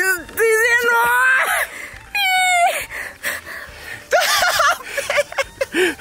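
Men yelling and screaming in wordless excitement, high rising calls in several bursts with shriekier cries about four seconds in: celebrating a fish that has just weighed in at nearly 19 kilos.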